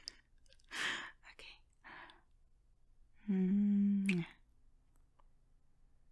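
A woman's close-miked kiss: a breath and a few soft lip clicks, then a steady closed-mouth 'mm' hum of about a second that ends in a lip smack.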